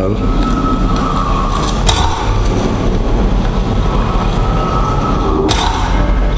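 Film trailer soundtrack: a dense, droning score with a deep rumble under a held high tone, a sharp hit about two seconds in, and a sudden cut about five and a half seconds in.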